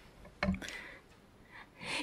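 A short, sharp breath close to a microphone about half a second in, then faint room tone and an intake of breath just before speech resumes.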